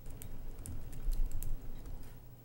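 Laptop keyboard typing: scattered irregular clicks, with a few dull low thumps in the middle that are the loudest sounds.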